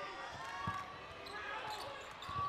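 A basketball being dribbled on a hardwood court, a few low bounces, clearest under a second in and near the end, over the murmur of the arena crowd.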